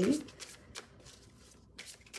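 Faint rustling of a deck of oracle cards being handled by hand, with a few soft card strokes.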